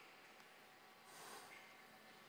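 Near silence: faint room tone, with a soft breath about a second in.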